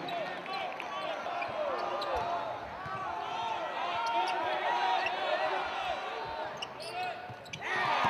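Basketball game sounds on a hardwood court: sneakers squeaking in many short chirps and the ball bouncing, over a busy arena background. Near the end the background grows louder.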